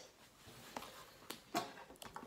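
A few faint, short clicks of plastic whiteboard markers being handled over their plastic tray, with a low room hush between them.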